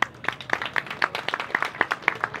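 A small audience applauding, the separate hand claps of a few people heard distinctly at an uneven pace.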